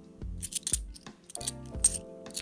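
A stack of 50p coins handled in the fingers, clicking against one another several times as they are thumbed through, with the sharpest click near the end.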